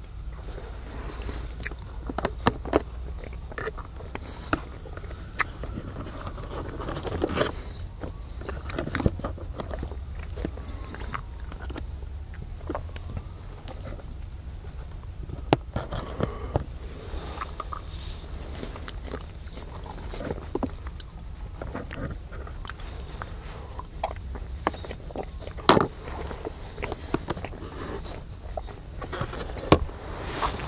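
Close-up mouth sounds of someone biting and chewing a breakfast of eggs and turkey bacon, with many scattered short clicks and ticks, over a steady low hum.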